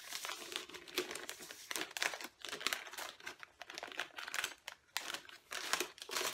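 Paper protective strip crinkling and rustling as it is pulled out from under a banjo's strings, in a quick run of irregular crackles.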